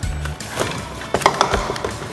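Hollow plastic toy bowling pins knocking against each other and the cardboard box as a hand lifts them out: a few sharp clicks, the loudest around the middle, over background music.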